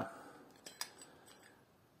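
A few faint, sharp metallic clicks as a steel gear is slid off the shaft of a Vespa PK gear cluster by hand.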